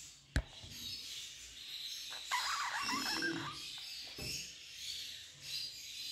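Budgerigars chattering and chirping, with a single sharp click shortly after the start.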